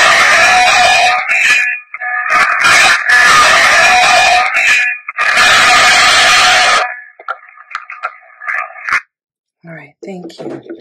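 Playback through the small speaker of a Panasonic IC voice recorder: loud hiss and static in three long stretches with brief gaps, then softer broken fragments that stop about nine seconds in. A voice-like sound in the static is captioned "a lot of" and presented as a spirit voice (EVP).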